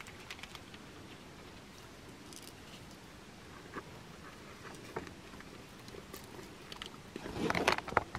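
Quiet handling of craft pieces with a few faint clicks and taps, then, near the end, a louder crackling rustle of dried grapevine twigs as a wire stem is pushed into the wreath.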